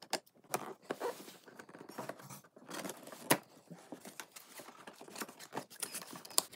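Cardboard toy box being opened by hand: the lid flaps scraping, rustling and snapping with irregular small clicks, and one sharper snap a little past the middle.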